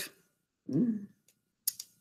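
A brief, faint voice sound about a second in, then a few quick clicks near the end, with dead silence between.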